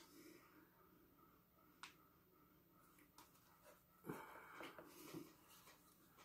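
Near silence: room tone, with a faint click about two seconds in and a few soft faint sounds a little past the middle.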